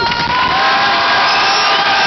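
A large crowd of students cheering and shouting, a steady din of many voices.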